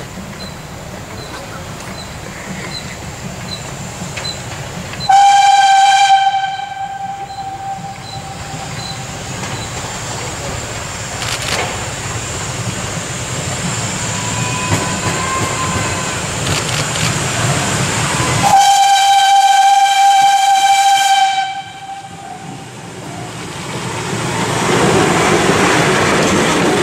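Ty2 steam locomotive approaching and sounding its whistle twice, a short single-pitched blast about five seconds in and a longer one of about three seconds later on. Near the end the sound of the engine and its running gear grows louder as it comes up close and passes.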